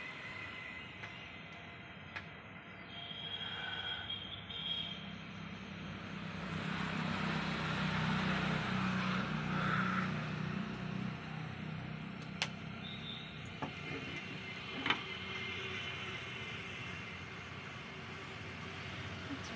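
Low rumble of a passing vehicle, swelling to its loudest around the middle and easing off, with a few sharp clicks.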